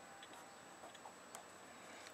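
Near silence, with a few faint, irregular light ticks of a pen tip writing on paper.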